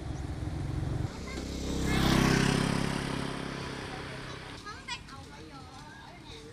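Engine of a loaded river barge running as it passes, its steady drone swelling to a peak about two seconds in and then fading away. Faint children's voices follow near the end.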